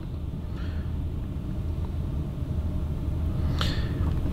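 Low, steady rumble in a parked electric car's cabin, slowly getting a little louder, with a short tick near the end.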